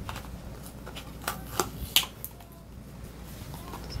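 Small cardboard box being handled: a few soft clicks and scrapes as it is turned over in the hands, over a faint low hum.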